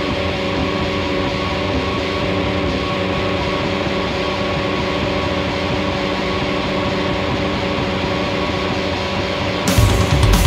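Heavy rock band playing live: electric guitars and bass hold a steady, sustained drone with no drums. The drum kit crashes back in just before the end.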